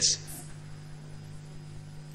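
Steady low electrical hum, a held tone with faint overtones, in a pause between spoken sentences.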